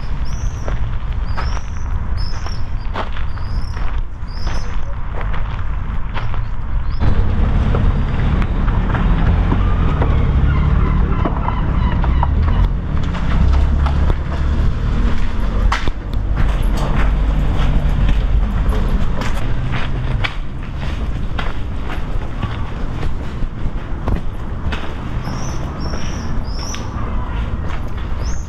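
Outdoor street ambience with a steady low rumble, heavier after about seven seconds. A bird repeats a short rising chirp about once a second near the start and again near the end.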